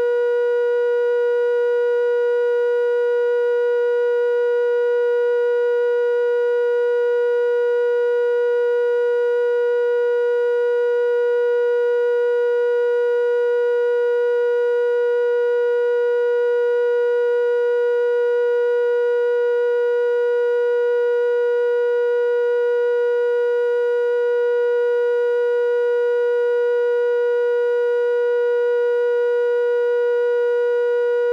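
Line-up test tone recorded with colour bars at the head of a U-matic videotape: a single steady mid-pitched tone held without change.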